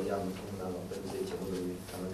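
A man speaking slowly into a microphone, his voice in drawn-out syllables with short breaks.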